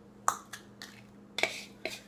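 A spoon tapping and clinking against a plastic food processor bowl and measuring cup as graham cracker crumbs are spooned out: several short, sharp taps spread over the two seconds.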